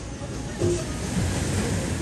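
Seaside ambience: surf washing onto the shore, with faint voices and music in the background.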